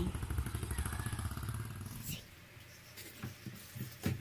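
An engine running with a fast, even pulsing beat, which stops abruptly about halfway through. After that come only faint scattered clicks and knocks.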